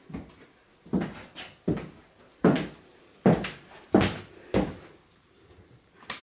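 About seven sharp knocks or thuds at an even, walking-like pace, a little under a second apart, each dying away quickly in a small room.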